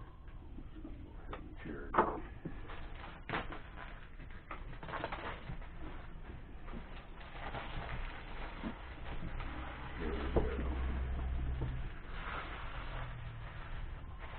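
Cardboard packaging being cut open with a knife and its lid slid off: scattered clicks, scrapes and rubbing of cardboard, with a sharp click about two seconds in and a longer rub of cardboard on cardboard about ten seconds in.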